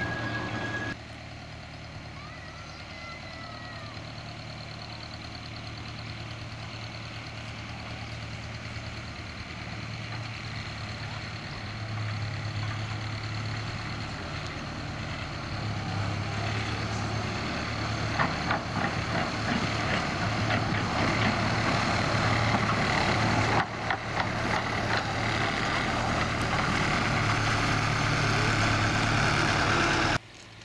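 Miniature railway locomotive running along the track toward the camera, a steady low engine-like drone that grows louder as it nears, with a few sharp clicks in the second half.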